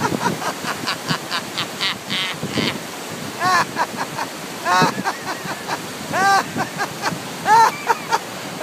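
A man laughing out loud in bursts of short 'ha' sounds, a deliberate laughter-therapy laugh: breathy and high at first, then several louder peaks about every second and a half. Under it, the steady rush of fast-flowing river water.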